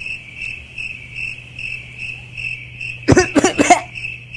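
Crickets chirping in a steady pulsing rhythm, two or three chirps a second, over a low steady hum. About three seconds in, a short loud vocal sound cuts across it.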